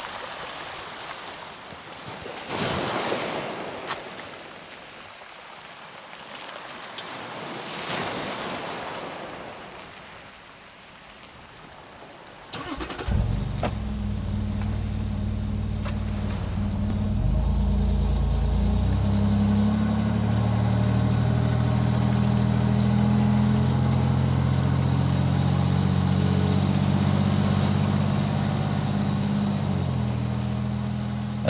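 Waves washing on the shore in slow swells. About thirteen seconds in, a Land Rover Discovery 3's TDV6 V6 diesel engine starts and then runs steadily, its note stepping up a few seconds later.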